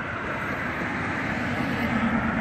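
A motor vehicle engine running, a steady rumble that grows slightly louder toward the end.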